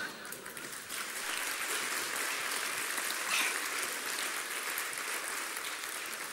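Theatre audience applauding, swelling about a second in and then holding steady.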